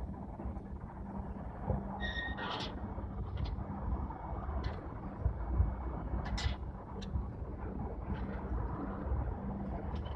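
Outdoor ambience: a low, steady rumble of wind on the microphone and distant traffic, with a faint steady hum. A short high chirp comes about two seconds in, and scattered faint clicks follow.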